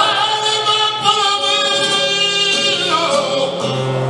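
Flamenco cante: a male singer holding a long, wavering melismatic line, with acoustic flamenco guitar sounding low notes beneath.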